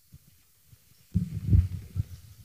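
Low, muffled thumps and shuffling of a congregation sitting down and moving about, with a louder run of thuds from about a second in.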